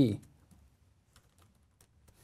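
Computer keyboard typing: a handful of faint, scattered keystrokes.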